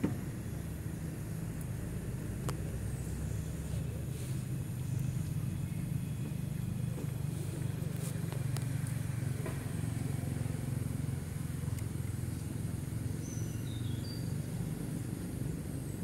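Steady low rumble of outdoor background noise, with a few short faint high chirps near the end.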